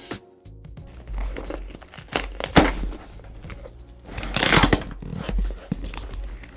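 Packing tape on a cardboard box being slit with a folding multi-tool knife, and the box flaps torn open: irregular scraping, tearing and crinkling. The loudest tears come about two and a half and four and a half seconds in.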